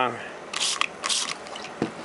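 Two quick spritzes from a trigger spray bottle misting water into a cup, two short hisses about half a second apart, followed by a short knock.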